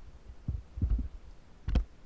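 Several dull, low thumps. There is one about half a second in, a couple close together around one second, and the loudest, with a sharper crack on top, just before the end.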